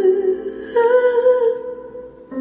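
A woman's voice holding a long, wavering note over sustained electric piano chords, the sound fading out near the end.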